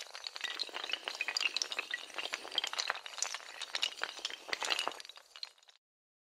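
Domino-chain clatter: a dense, fast run of clicks from many small hard tiles toppling against one another, stopping suddenly near the end.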